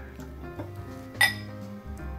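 One sharp, ringing glass clink a little past a second in, made by glassware while whisky is poured into a tulip nosing glass. Steady background music plays underneath.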